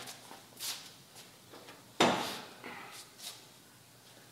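Footsteps, then about two seconds in a single sharp knock with a short ring, as a stainless steel muffler is picked up and handled.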